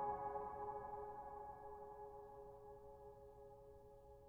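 A chord on a solo piano left ringing and slowly dying away, with no new notes struck, growing faint near the end.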